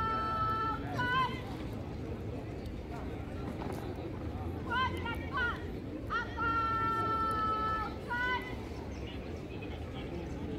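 A drill commander's high voice calling drawn-out parade commands: a long held note closed by short calls just after the start, then short calls about five seconds in followed by another long held note, over steady low outdoor background noise.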